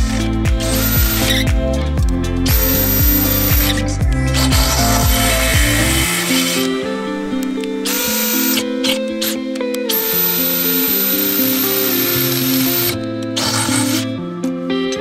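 Cordless drill boring into a steel frame member with a twist bit, running in several bursts of one to a few seconds each, over background music.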